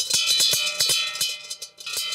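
A hanging metal bell rung rapidly by pulling its rope, about six clangs a second over a steady ring, with a brief pause near the end. It is rung as a finish bell, to mark arriving first.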